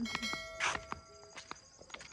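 Subscribe-button sound effect: clicks and a bell-like notification chime whose tones ring steadily for about two seconds, with a short whoosh a little over half a second in.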